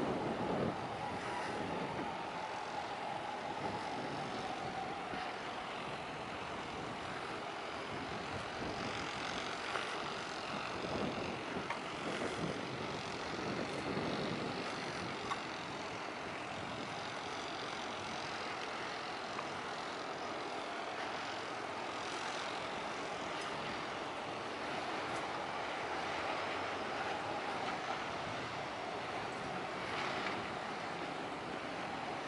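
Steady outdoor background noise with a faint hum, like distant engines or machinery; nothing stands out.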